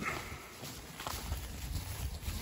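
Livestock walking through pasture grass: faint hoof steps and rustling, with a few light clicks.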